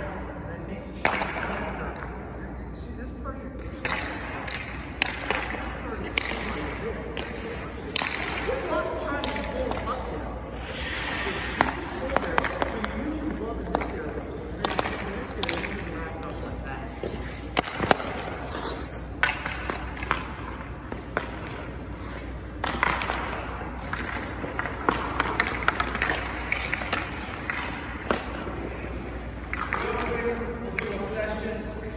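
Hockey skate blades scraping on rink ice, with scattered sharp clicks and knocks, under low talking and a steady low rink hum.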